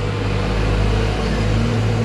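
A steady low hum with no speech over it; its deepest part drops away near the end.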